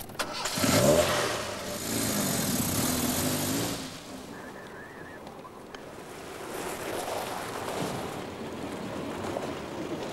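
Car engine started with the ignition key, catching about half a second in and revving, then running steadily for a few seconds. Later a car is heard driving up, its engine sound rising and falling.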